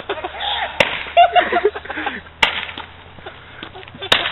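Roman candle firing, each fireball leaving the tube with a sharp pop: two pops about a second and a half apart, with faint voices in between.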